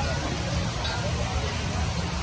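Outdoor café ambience: indistinct background voices over a steady low rumble and hiss.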